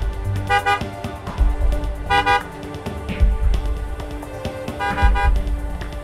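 A pickup truck's horn honking three short times, about two and a half seconds apart, over background music.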